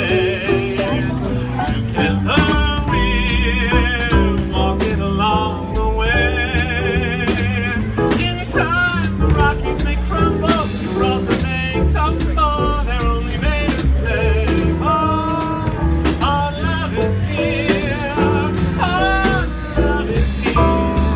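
Live jazz band: a male vocalist singing with vibrato through a handheld microphone, backed by a Roland electric keyboard, upright double bass and a drum kit with regular cymbal and drum strokes.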